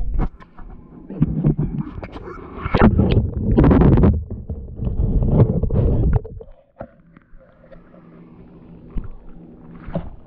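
Water splashing and gurgling around a GoPro HERO7 Silver as it is dunked, heard muffled through the camera's own microphone from about a second in. It cuts off suddenly about six seconds in, leaving a faint low rumble.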